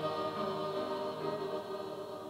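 Church choir of mixed men's and women's voices singing a hymn in long held notes, slowly fading in loudness.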